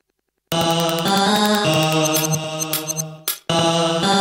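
Music played from DJ decks starts about half a second in, after a moment of silence: a track of sustained pitched tones with little deep bass. It cuts out briefly near the end and comes straight back.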